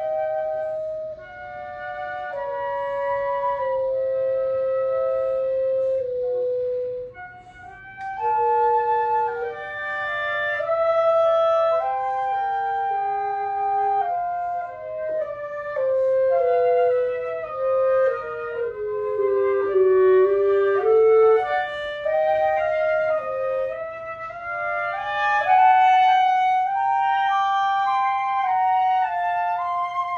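Flute and clarinet playing a two-part duet, their two melodic lines interweaving in held and moving notes, with a brief softer moment about seven seconds in.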